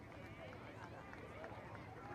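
Faint, indistinct chatter of several people talking, over a steady low background rumble.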